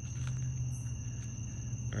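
Night insects such as crickets keep up a steady high-pitched drone of two even tones, over a steady low hum.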